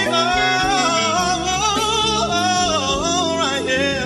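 A male singer's wordless, wavering vocal run over a sustained instrumental backing in a slow love song. The run bends up and down and falls in pitch past the middle.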